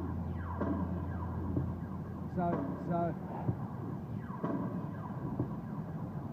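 Low, steady rumble of a car's engine and road noise heard from inside the cabin while driving, easing off about two seconds in.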